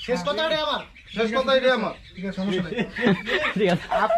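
A person talking in short phrases, with brief pauses about a second and two seconds in.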